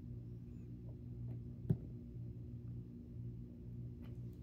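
Steady low hum made of a few unchanging tones, with one small click about one and three-quarter seconds in as fingers handle the doll's plastic lip jewelry.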